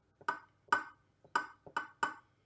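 About six light, sharp taps and clinks on a metal muffin tin, unevenly spaced, as pastry lids are pressed down into its cups by hand.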